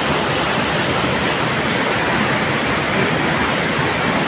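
Waterfall plunging into a rocky pool: a steady rush of falling water.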